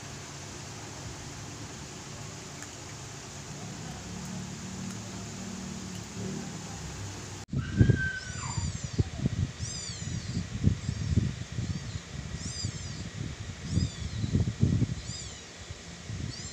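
A steady low hum and hiss, then after a sudden change about halfway a cat meows once, falling in pitch. A series of short high-pitched chirping calls and irregular low thumps follow.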